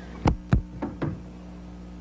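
Knocking on a front door: four raps, two loud ones about a quarter second apart, then two softer ones.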